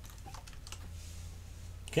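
Computer keyboard being typed on: light, irregular key clicks.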